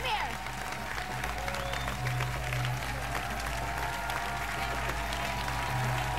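Studio audience applauding with scattered shouts, over background music with a steady low note.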